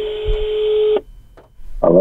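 Telephone ringback tone heard over a phone line: a single steady beep lasting about a second. Near the end a voice starts speaking on the line.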